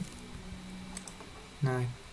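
A few light computer keyboard keystrokes, typing a number into a spreadsheet.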